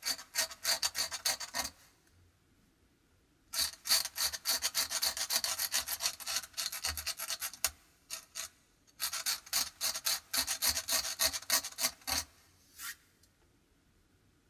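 Craft knife blade scratching fine white lines into dry watercolour paint on cold-pressed paper, lifting out light fur lines. It comes in three runs of quick, rasping short strokes, separated by pauses of a second or two.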